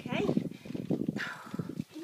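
A dog struggling in a plastic tub while being held for a bath: a quick run of knocks and scrabbling against the plastic, with brief whining near the start and again about a second in.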